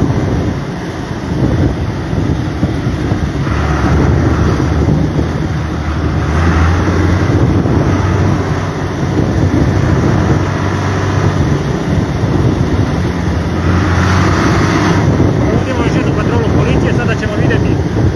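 Farm tractor's diesel engine running steadily as it drives along the road, a loud low rumble heard from on board, with wind noise on the microphone.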